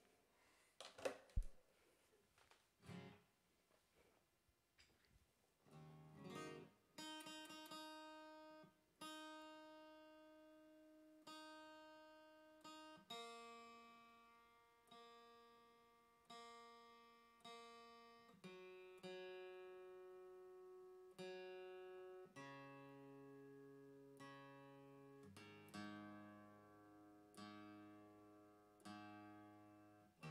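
Steel-string acoustic guitar being tuned: single strings plucked again and again, each note left to ring and fade, moving from one string to the next. A few knocks from handling the guitar come in the first few seconds.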